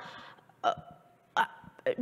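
A woman's voice in a pause in speech: a short hesitant 'uh' and a couple of brief vocal sounds between phrases.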